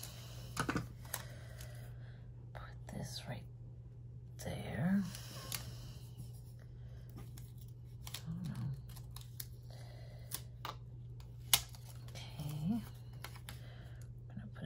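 Light clicks and rustles of paper stickers being handled and pressed onto a planner page, with a correction-tape roller run across the paper near the start. A soft, low vocal sound recurs about every four seconds over a steady low hum.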